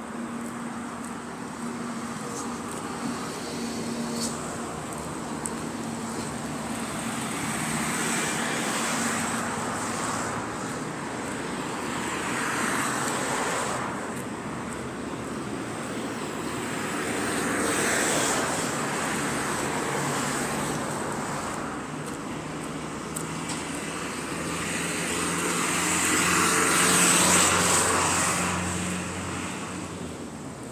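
Highway traffic passing close by: several vehicles rise and fade one after another, the loudest near the end. A low engine hum joins about two-thirds of the way in.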